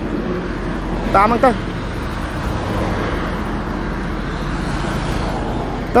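Steady road traffic rumble beside a highway, with a short spoken phrase about a second in.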